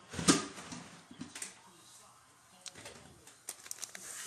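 A single sharp knock about a third of a second in, then faint scattered clicks and crinkles from a gloved hand handling foil trading card packs. The clicks grow more frequent near the end.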